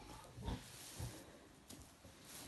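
A Tamworth sow grunting softly, two short low grunts about half a second apart.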